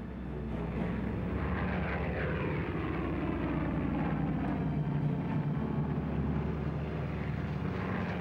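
Propeller-driven piston aircraft engines running together, a dense steady sound of several engines with their pitches slowly shifting; it swells up in the first second, then holds.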